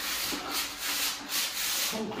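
A painted wall being rubbed down by hand to prepare it for repainting, with repeated scraping or sanding strokes, a few a second.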